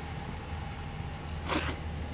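Steady low hum of an engine idling.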